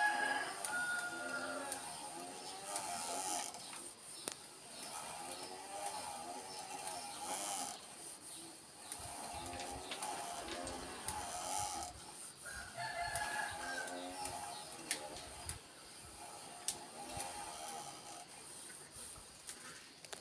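Roosters crowing again and again, a call of a second or two every few seconds.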